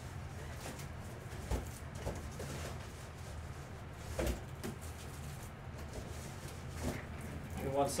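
Handling noise as plastic card top loaders are fetched: a few short knocks and clicks, the sharpest about halfway through, over a steady low hum.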